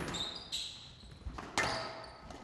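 Squash rally on a glass court. A sharp crack of the ball being struck at the start, high squeaks of court shoes on the floor just after, and a second, louder ball strike about one and a half seconds in.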